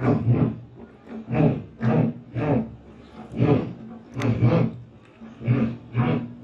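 A man's voice crying out in short, rough bursts, one or two a second, with a low, harsh tone.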